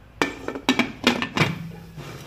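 Metal pressure cooker lid being fitted onto the cooker and closed: a quick series of clinks and knocks of metal on metal.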